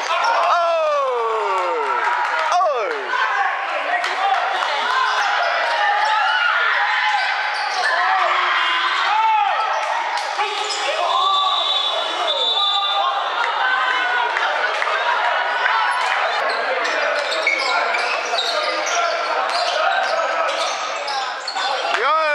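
Basketball game in a sports hall: the ball bouncing on the court under a steady mix of players' and spectators' voices calling out. A long falling 'whoo' shout comes at the very start and again at the end.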